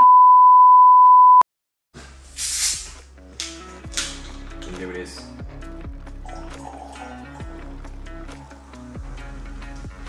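A loud, steady 1 kHz test-tone beep of the kind that plays with television colour bars, cutting off abruptly about a second and a half in. After a short silence, background music with a steady beat comes in, with a brief hiss near the start of the music.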